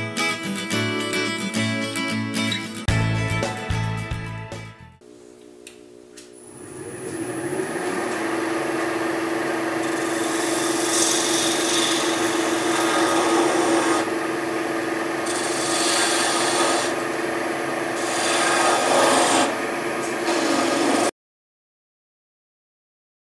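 Wood lathe spinning the apple-wood mallet with a steady hum while a parting tool cuts into the end of the handle to part it off, the hissing cut rising in several bursts. Guitar music plays for the first few seconds, and the sound cuts off suddenly near the end.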